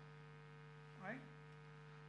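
Near silence with a steady low electrical hum, and one brief vocal sound from the man about a second in.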